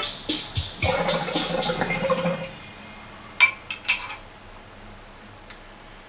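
Water bubbling and gurgling in a glass beaker bong as a hit is drawn, for about two and a half seconds, then two sharp clicks.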